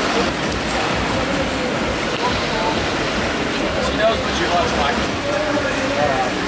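Indoor pool hall ambience: a steady wash of splashing water, with faint voices echoing in the hall.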